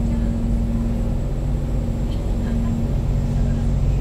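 Steady low hum and rumble of background noise, with no speech.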